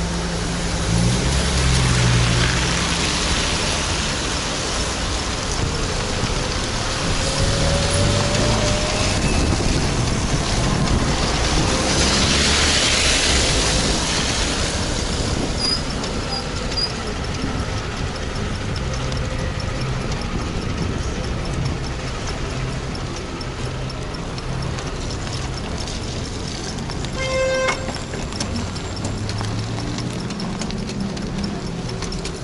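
Small engine of a homemade motorized cargo bicycle running under way, its note rising and falling, with the hiss of tyres on a wet road swelling twice as traffic passes. A short horn toot sounds near the end.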